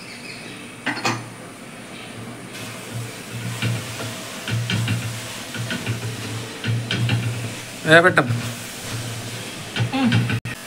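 A metal spoon stirring and scraping soya chunks with crushed coconut in a brass pot over the gas, small irregular clicks of the spoon on the metal over a low sizzle. A short vocal sound comes about eight seconds in.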